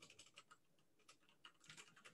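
Faint computer keyboard typing: a quick, uneven run of soft key clicks.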